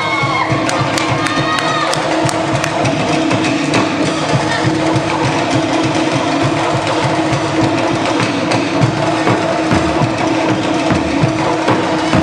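Polynesian drum ensemble playing a fast, driving rhythm on wooden slit log drums (to'ere) and bass drums, with shouts from the crowd in the first couple of seconds.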